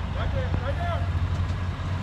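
Low steady rumble of an idling vehicle engine, with some faint talk over it in the first second.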